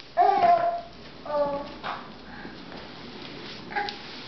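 A toddler's short, pitched whining vocalizations while straining to climb up onto a box: a louder call right at the start, a second about a second later, and a few softer ones after.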